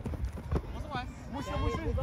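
Players shouting calls to each other, with running footsteps thudding on grass turf.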